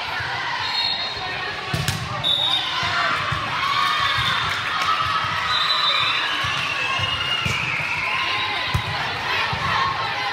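Gym ambience during an indoor volleyball match: spectators chattering and a ball bouncing on the hardwood floor in repeated thumps, with a few short high squeaks about one, two and a half, and six seconds in.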